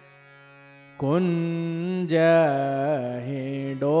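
A faint steady tone, then about a second in a solo voice sings a slow, ornamented line of a Hindola swing-festival devotional song, sliding between notes. A new phrase begins near the end.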